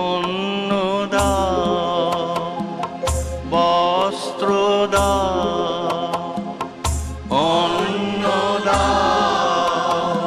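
Bengali song: voices singing long, sliding melodic lines over instrumental accompaniment, with a deep drum stroke about every two seconds and light percussion ticks.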